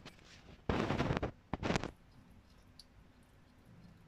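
European hedgehog eating snails, with two short bursts of crunching in the first two seconds.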